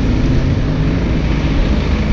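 Box truck's engine running close by, a steady low hum under city traffic noise, with wind on the microphone.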